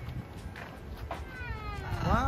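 A parrot calling once in the second half, a drawn-out note sliding down in pitch.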